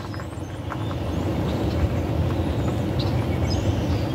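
A steady low rumble of outdoor background noise, growing a little louder over the first couple of seconds.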